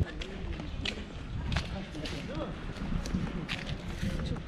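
Footsteps on pavement while walking, a few separate sharp steps over a low outdoor rumble, with faint voices of people nearby.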